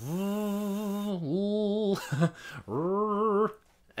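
A man humming three held notes on about the same pitch, each under a second, with a slight wobble. They are voiced consonants such as "mm", sustained to show that they can carry a tune.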